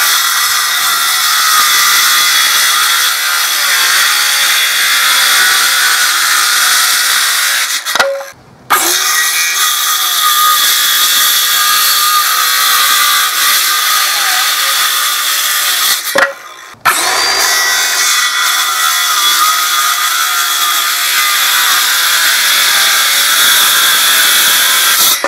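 Ryobi cordless circular saw cutting a 19 mm Tasmanian oak board: the blade runs steady and loud through the wood, with a high, hissing edge. The sound cuts off briefly twice, at about a third and two thirds of the way through.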